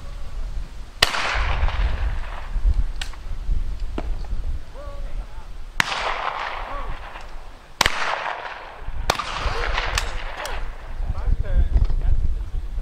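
Shotguns firing at clay targets during trap shooting: about five sharp reports one to two and a half seconds apart, each trailing off in a long echo.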